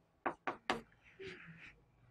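Chalk on a chalkboard: three quick taps as strokes are started, then a short, faint scratching stroke a little after a second in.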